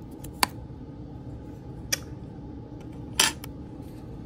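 Small clicks from fingers handling the M.2 SSD bracket inside an open laptop: two sharp clicks, about half a second and two seconds in, then a short scraping rattle a little after three seconds.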